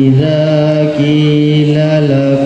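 A boy reciting the Quran in the melodic tilawah style, drawing the words out into long held notes that step and turn between pitches.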